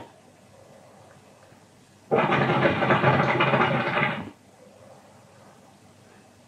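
Hookah water base bubbling during one long draw through the hose, lasting about two seconds and starting about two seconds in.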